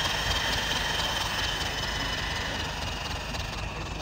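Turbocharger spinning as it blows air into a wood fire: a steady rushing noise with a thin high whine that slowly falls in pitch.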